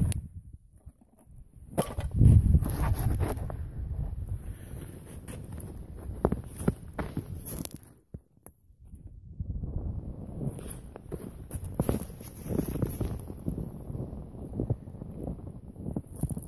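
Irregular knocks and rustling of a camera being handled and set down, a brief lull about eight seconds in, then crunching footsteps in snow with clothing rustling as someone steps up close to the microphone.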